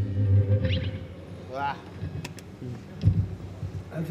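A band's last chord ringing and cutting off about half a second in, followed by a few brief voices, a couple of light clicks and a low thump on the stage.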